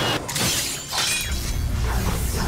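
Animation sound effect of paving stone cracking and shattering under a hard landing: a sudden crash about a quarter second in, then scattering debris, over fight-scene music.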